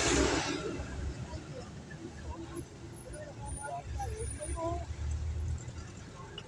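Van's engine and road noise heard from inside the cabin while driving slowly in traffic, a steady low rumble. A brief loud rush of noise right at the start, and faint voices in the middle.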